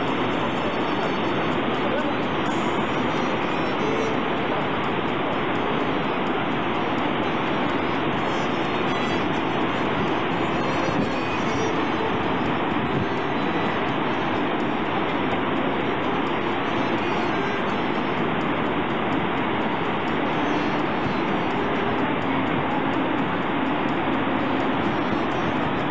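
Steady, unbroken engine and rotor noise inside a sightseeing helicopter's cabin.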